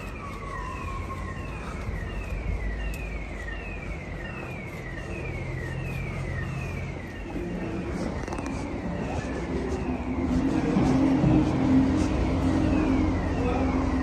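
A siren repeating quick falling sweeps, about two a second, most plainly in the first half and again near the end. Under it a low vehicle engine rumble grows louder in the second half.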